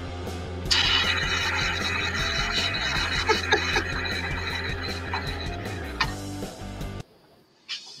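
1970s-style rock song with a guitar solo near the end. It gets louder about a second in and stops about seven seconds in.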